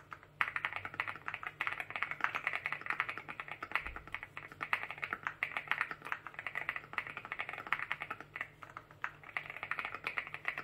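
Continuous fast typing on a Meletrix Zoom 75 mechanical keyboard fitted with WS Morandi linear switches: a dense run of keystroke clacks, several a second, after a brief gap at the very start.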